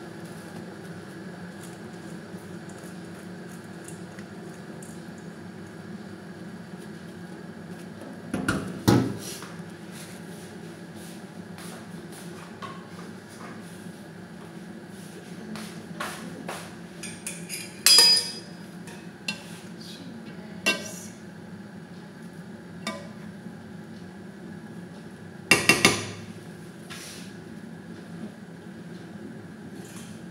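Metal pots and kitchen utensils clattering and clinking in scattered bursts, three louder clatters well apart among several lighter clinks, over a steady low hum.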